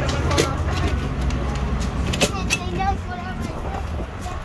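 Low steady rumble of a motor vehicle running nearby, with faint voices.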